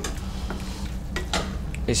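Frying pan of cardoon mushrooms, pepper and tomato sizzling gently on a gas burner, with a few light clicks of a utensil stirring in the pan.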